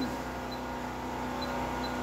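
Steady drone of a petrol generator running under charging load, powering two inverters that are charging a lead-acid battery bank. A few faint short high pips sound over it.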